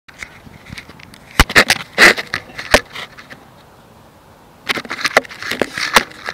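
Handling noise on a phone's microphone: fingers rubbing and knocking against the phone, in two clusters of sharp clicks and rustles with a quieter stretch between.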